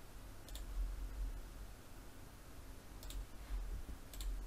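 Faint computer mouse clicks, one about half a second in and a pair around three seconds, over a low steady hum.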